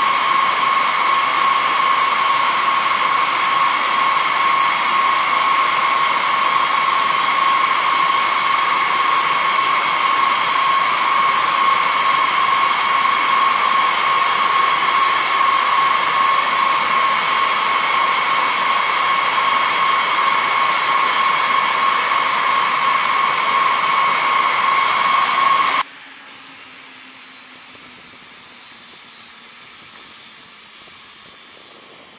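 Jet turbine running steadily near a B-52 bomber: a loud, even, high-pitched whine over a rushing hiss. It cuts off suddenly near the end, leaving a much quieter low rumble.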